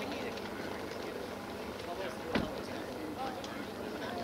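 Quiet outdoor background with faint, distant voices and one short sharp click about two and a half seconds in.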